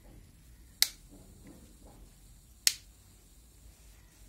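Two sharp plastic clicks, about two seconds apart, as snap-fit clips on a smartphone's plastic inner frame come free while it is pried apart by hand, with faint handling rustle between.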